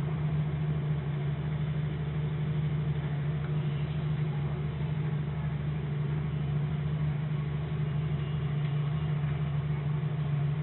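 BMW E36's M43 four-cylinder engine idling steadily, heard from the open engine bay while the A/C system is being recharged.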